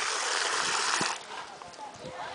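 Water running and splashing steadily, then shut off abruptly about a second in.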